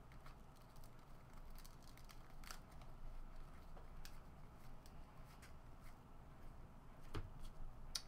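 Faint soft clicks and slides of Upper Deck basketball trading cards being flipped one by one off a stack held in the hands, with a slightly louder tap near the end.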